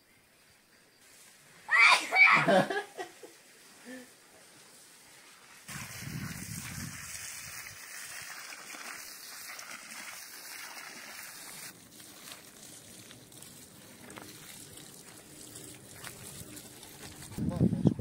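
Water from a garden hose splashing onto the dry soil of a tree basin. It starts suddenly and runs steadily for about six seconds, then drops to a fainter sound.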